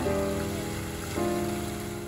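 Steady rush of falling water from a tiered fountain, with soft piano music playing over it.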